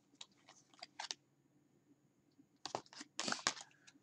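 Faint handling of playing-card-stock cards as one is drawn from a deck: a few soft papery rustles and light clicks in the first second, then a denser flurry about three seconds in.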